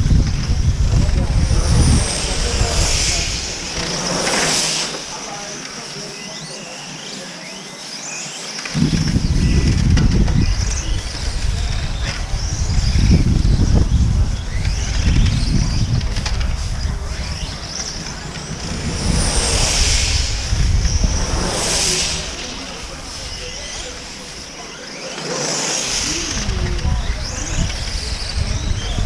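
1/8-scale electric on-road RC cars whining round the track, the motor pitch rising and falling as they accelerate and brake, with louder close passes a few seconds in and again after the middle. Wind rumbles on the microphone throughout, dropping away briefly twice.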